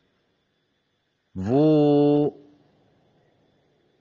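A man's voice drawing out a single word, held on one pitch for about a second, between stretches of near silence.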